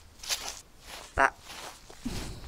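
A few soft footsteps, then a voice briefly says "That..." about a second in.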